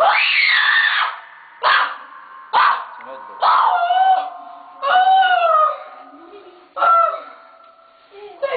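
A woman screaming and wailing: one long loud scream in the first second that rises then falls in pitch, followed by five shorter cries, some of them drawn out and sliding down in pitch.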